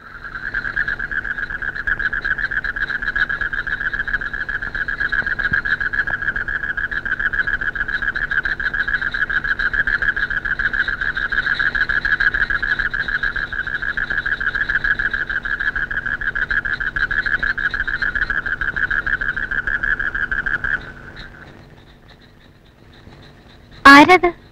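Night ambience: a steady, high, fast-pulsing trill from a chorus of night creatures, over a low steady hum. It fades out about 21 seconds in, and a brief loud sound cuts in at the very end.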